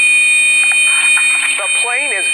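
A small passenger plane's cockpit warning alarm sounding a loud, steady, continuous tone as the aircraft goes down toward the sea.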